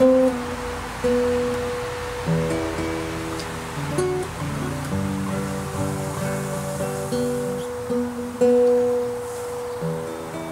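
Classical nylon-string acoustic guitar played solo, plucked notes and chords ringing out and fading, with a high note held twice, about a second in and again near the end.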